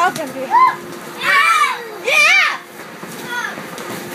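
Children shrieking and squealing at play: several high-pitched cries that rise and fall, the loudest two about a second and two seconds in.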